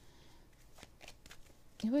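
Faint flicks and rustles of a tarot deck being shuffled by hand, a few soft clicks spread through a quiet stretch. A woman's voice starts near the end.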